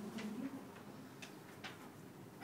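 A lull in a quiet room: a soft low murmur with three faint ticks or clicks, about a quarter second in, just past a second in, and again shortly after.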